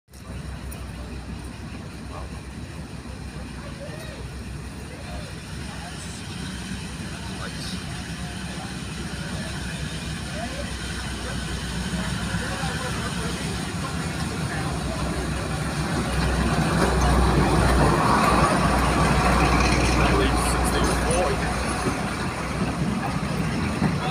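Class 42 Warship twin-engined diesel-hydraulic locomotive approaching on a freight train, its engines growing steadily louder and at their loudest as it passes about two-thirds of the way through. Near the end the sound eases as the goods wagons roll by behind it.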